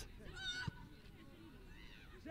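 A short, high-pitched shout from a footballer on the pitch, heard from a distance, followed by a soft thump. Faint open-air background throughout.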